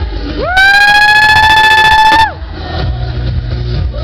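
A spectator's loud, high-pitched whoop, rising sharply, held for about a second and a half and falling away at the end, over club dance music.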